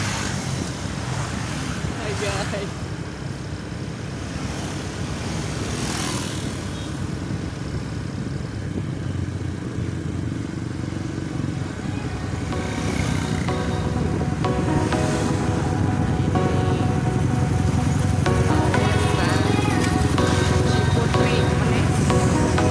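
Motorcycle engine running with road and wind rumble while riding along a road, growing louder in the second half.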